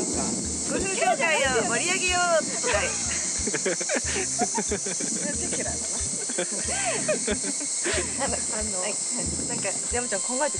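Two women talking and laughing, over a steady high-pitched buzz of insects.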